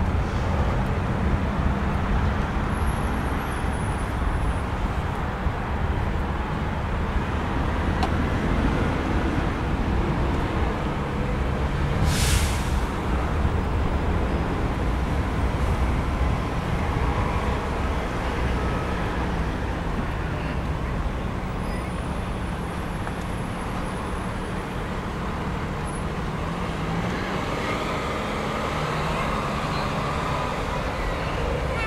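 Steady rumble of road traffic, with a brief loud hiss about twelve seconds in.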